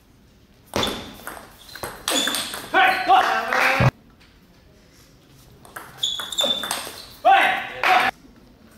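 Table tennis ball hit back and forth in a rally, with sharp pings off the bats and table. Twice a loud voice shouts, each shout cutting off suddenly, and the hall echoes.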